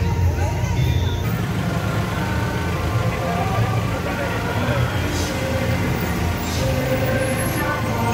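Slow-moving truck engines running steadily under the chatter of a street crowd.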